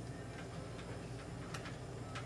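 Faint, scattered small clicks over a steady low hum, with one sharper click about one and a half seconds in.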